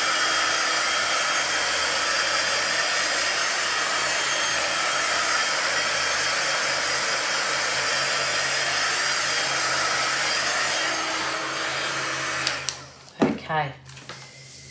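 Handheld heat gun running steadily, an even rush of blown air, passed over wet acrylic pour paint to burst air bubbles; it is switched off about twelve and a half seconds in.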